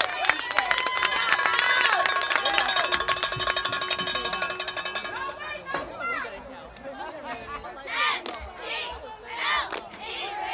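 Football crowd and players shouting and cheering, over a fast, even rattle that stops about halfway through. Near the end, a few separate loud shouts.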